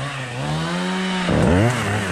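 Two-stroke chainsaw engine revving: its pitch climbs steadily, drops sharply a little past halfway, then climbs again and falls back near the end.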